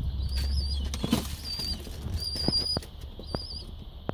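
Pigeons flapping their wings, with a loud flutter about a second in. Several short, high, wavering squeaks sound throughout.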